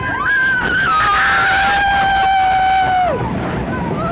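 Roller coaster riders screaming: long, held screams from more than one voice that fall off and break about three seconds in, over a steady rush of wind noise.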